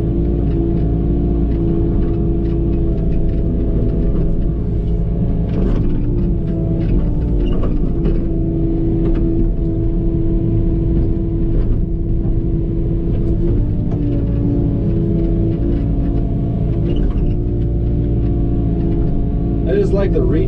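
Tracked excavator's diesel engine running under load with a steady hydraulic whine, heard from inside the cab; the whine's pitch shifts as the boom and bucket are worked, with a few brief knocks.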